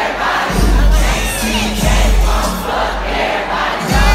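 A large concert crowd shouting over loud rap music from the PA. The heavy bass drops out for a moment near the start and again just before the end.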